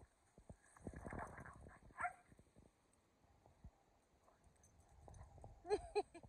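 Two dogs at play: a short, high dog vocal sound about two seconds in and a louder one near the end, with scuffling and rustling between them.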